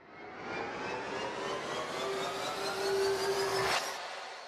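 Logo-sting sound effect: a swelling rush of noise with several tones gliding steadily upward, building to a sharp hit near the end that then dies away.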